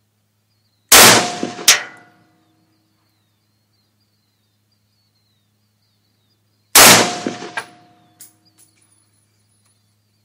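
Two shots from a Century Arms GP WASR-10 AK-pattern rifle in 7.62x39mm, about six seconds apart. Each is a sharp crack followed by a short ringing decay and a second sharp crack under a second later.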